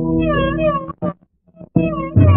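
Carnatic violin playing a held note with sliding ornaments that bend the pitch up and down. Just under a second in, the sound cuts out almost to silence with a couple of faint clicks, and the music comes back near the end.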